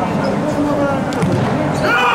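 Voices calling out in a sports hall, with one sharp thud of a futsal ball being kicked a little past a second in.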